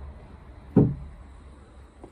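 A single dull thump about a second in, over a low steady rumble: handling noise from the phone camera as it is moved.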